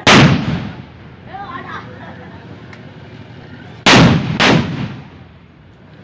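Three loud firecracker bangs, each with a short echoing tail: one right at the start, then two about half a second apart around four seconds in.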